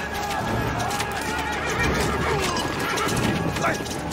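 Horses whinnying over clattering hooves, with men shouting, in a cavalry battle scene.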